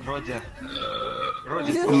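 Voices from a playing cartoon clip and the people watching it, with a held, steady tone in the middle; a man starts to speak at the very end.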